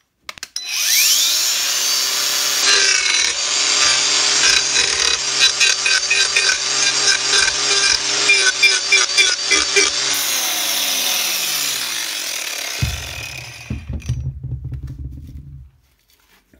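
Angle grinder fitted with an Arbortech TurboPlane carving disc spins up with a rising whine, then shaves the edge of a wooden batten with a rough, chattering cut for several seconds. It winds down with a falling whine, followed by a low hum and a few knocks near the end.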